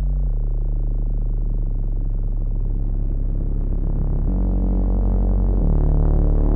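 Music: low sustained chords, heavy in the bass, that change about half a second in, again about four seconds in and near the end, growing slightly louder.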